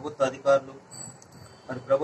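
A man speaking in Telugu, with a pause of about a second midway. During the pause there is a faint, thin, high steady tone.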